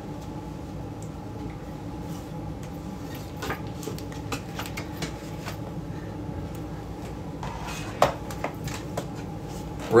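Room tone with a steady low electrical hum, broken by scattered light clicks and knocks of someone moving about and handling things, with one sharper click about eight seconds in.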